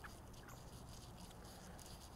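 Near silence: a faint, even background hiss.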